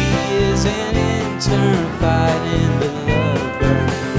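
Live country-rock band playing an instrumental passage of the song: strummed acoustic guitar over a steady drum beat with cymbal hits.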